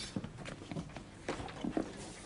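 Faint footsteps and shuffling: a few soft, scattered knocks.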